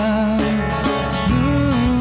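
Live acoustic band music: strummed acoustic guitar and bass guitar with a djembe played by hand, over a held melody line that slides between notes.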